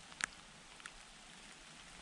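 Light rain making a steady, faint hiss, with a sharp tick about a quarter of a second in and a fainter one a little later.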